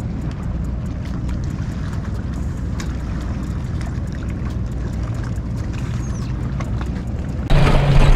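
Bass boat's outboard motor running steadily at low throttle as the boat is driven slowly onto its trailer at the ramp.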